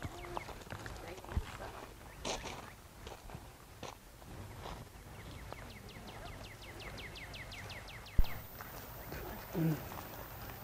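A bird trilling: a fast run of repeated falling notes, about nine a second, lasting nearly three seconds from about five seconds in. A sharp knock, the loudest sound, comes at the end of the trill, and a brief bit of a voice follows near the end.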